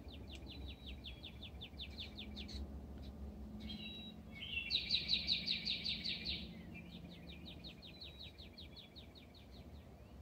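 A songbird singing rapid trills of quick repeated high notes, three trills of about two to three seconds each, the middle one the loudest, over a low steady background rumble.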